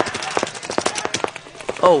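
Paintball markers firing on the field: a rapid, irregular string of sharp pops, several a second.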